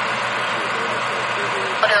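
Steady radio scanner static with a faint, broken voice under the hiss; a clearer voice comes in near the end.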